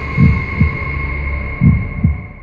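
Heartbeat sound effect from a trailer's soundtrack: two low double beats, about a second and a half apart, over a steady high-pitched drone.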